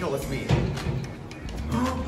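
A young man's short, drawn-out vocal sound of surprise near the end, over a steady low hum.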